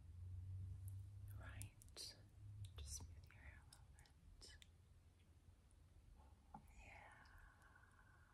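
Very quiet whispered breaths with a few light clicks as a strand of amethyst beads is handled, then a short hummed voice near the end.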